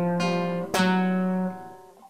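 Nylon-string classical guitar playing between sung lines: a held chord, then a new chord struck about two-thirds of a second in that rings and dies away near the end.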